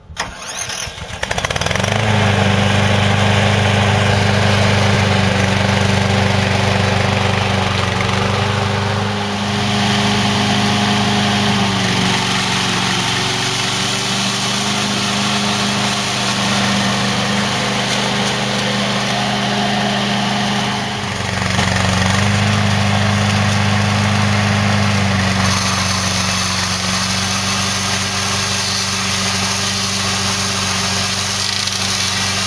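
Small gas engine of a remote-controlled tracked slope mower starting up, then running steadily under power while the mower drives and its trimmer heads cut. The engine note shifts twice, about a third and about two-thirds of the way in.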